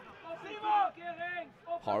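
Speech only: a man's voice speaking quietly, with short pauses.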